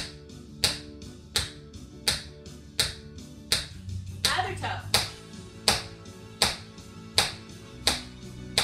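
Tap shoes striking a hardwood floor in a steady beat, one sharp tap about every three-quarters of a second, over background music with sustained tones.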